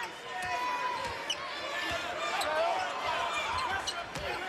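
A basketball dribbled on a hardwood court, with short high squeaks of sneakers, over the steady murmur of an arena crowd.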